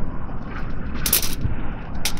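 Aluminium foil crinkling briefly about a second in as food is arranged on it, over a steady low rumble.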